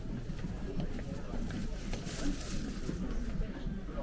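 Indistinct chatter of people talking nearby, too low to make out words, with a brief hiss about halfway through.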